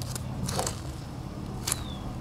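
Garden knife blade scraping and digging into clay soil to loosen it, with short scrapes about half a second in and again near the end.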